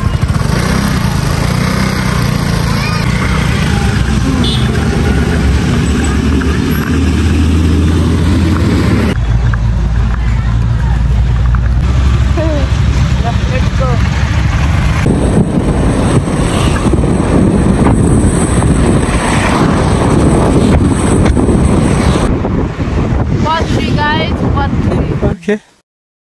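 A motor scooter riding along a road, its engine and heavy wind buffeting on the microphone making a loud steady rumble, with voices now and then. The sound changes abruptly several times as separate clips are joined.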